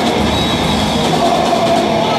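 Rock band playing live at full volume: distorted electric guitars and a drum kit with washing cymbals, forming one dense, unbroken wall of sound.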